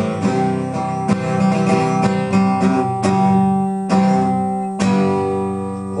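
Acoustic guitar strummed in the song's closing instrumental bars: a run of sharp chord strokes, with the last chord, struck about five seconds in, left ringing and fading.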